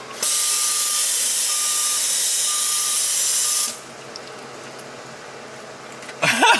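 A loud, steady hiss that starts suddenly and cuts off abruptly after about three and a half seconds, with a faint beep repeating about once a second under it. A much quieter hiss follows.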